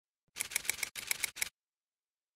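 A quick run of about eight sharp mechanical clicks in two short groups, lasting about a second and stopping abruptly.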